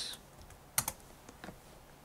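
Computer keyboard keystrokes: a sharp double click a little under a second in, then a few fainter taps.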